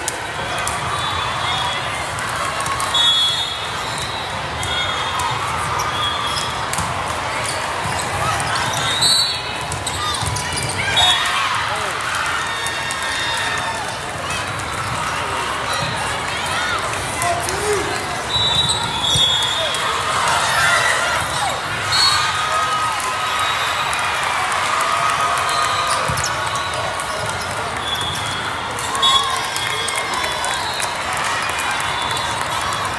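Busy indoor volleyball hall: many voices talking and shouting over one another, with thumps of volleyballs being hit and bounced. Short high whistle blasts sound several times across the hall, typical of referees' whistles.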